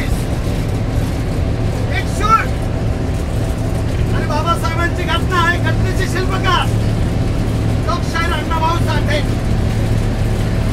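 Bus engine and road noise drone steadily inside the passenger cabin of a moving bus, with a man's loud voice declaiming in bursts over it.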